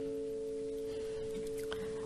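The last chord of a song ringing on from an acoustic guitar: a few steady, clear notes sustaining without much fade.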